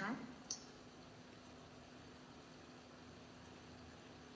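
Quiet room tone with a faint steady hum, broken by a single sharp click about half a second in.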